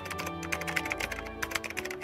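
Rapid, irregular computer-keyboard typing clicks, a typing sound effect for on-screen text, over background music with held notes.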